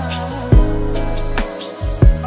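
Bollywood romantic mashup music: sustained chords over bass notes with a slow beat, a strong hit about half a second in.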